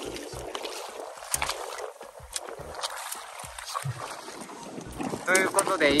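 Sea water lapping and sloshing against the hull of a small boat, with wind on the microphone and a few light knocks; a voice starts near the end.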